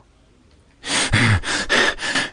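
A man's voice: loud gasping breaths that begin suddenly about a second in, after a near-silent moment.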